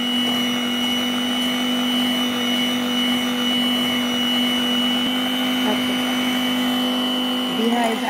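Electric hand mixer running at a steady speed with an even motor hum, its beaters whipping egg whites and sugar into a foam.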